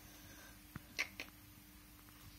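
Quiet kitchen room tone with a faint steady hum, a few soft clicks, and a short high squeak about a second in.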